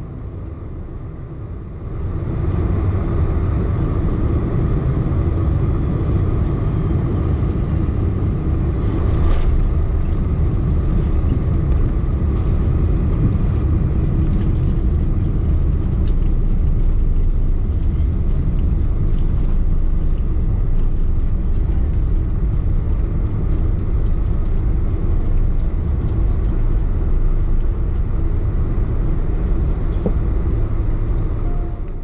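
Boeing 747-400 landing rollout heard from inside the cabin at a window seat behind the wing: a loud, steady roar of the jet engines with deep runway rumble, rising sharply about two seconds in.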